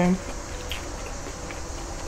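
Quiet chewing with a few faint, scattered mouth clicks, over a steady low room hum.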